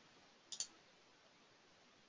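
A faint computer mouse click, in two quick parts about half a second in, as a spline point is placed; otherwise near silence.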